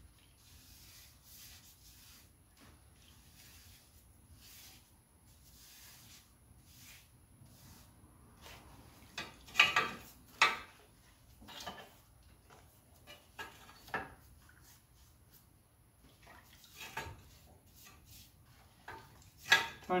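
A paintbrush being dipped and worked over a rusty steel exhaust downpipe in plastic tubs while phosphoric acid is brushed on. It is faint at first, then comes a run of sharp clicks and knocks as the brush and pipe tap against the tubs, loudest in a pair about halfway through, with scattered lighter taps after.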